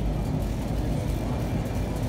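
Shopping cart rolling across a concrete store floor: a steady low rumble.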